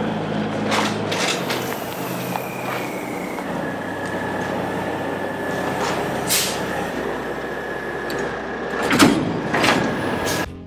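Semi tractor's diesel engine running at idle as it backs under a grain trailer, with a thin squeal that slides down in pitch and then holds steady. Near the end come two loud metallic clunks as the fifth wheel couples to the trailer's kingpin.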